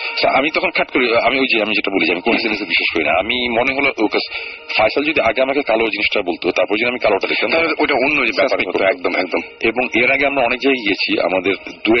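Speech only: a person talking continuously, telling a story on a radio broadcast.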